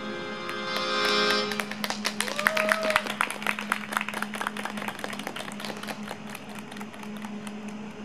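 The last notes of the tango music fade out, then scattered hand-clapping from a small audience, densest a couple of seconds in and thinning towards the end, over a steady low hum.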